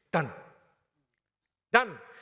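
A man's voice: a short utterance with a falling pitch at the start, about a second of silence, then another falling syllable near the end as speech resumes.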